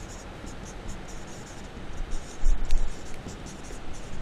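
Marker pen writing on a whiteboard: a run of short, faint strokes as letters are written out, with a dull low bump about halfway through.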